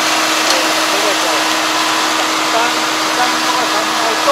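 ARN460 combine harvester's diesel engine running steadily as the machine drives along the road, a constant mechanical noise with a steady low hum.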